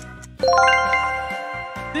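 A bright chime of bell-like notes rising quickly in a run about half a second in, then ringing on and slowly fading: a quiz answer-reveal sound effect, over light background music.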